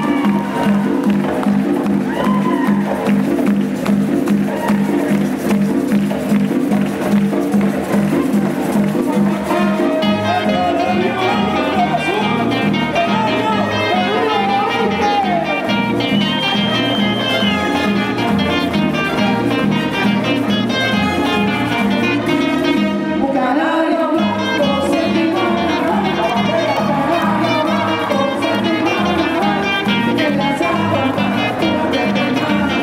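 Live plena music: pandero frame drums and a güiro keep a steady beat over conga drums, with a saxophone and singing, growing fuller about ten seconds in.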